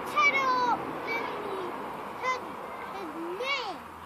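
A young child's high-pitched voice, wordless sing-song vocalising with pitch sliding up and down in short phrases.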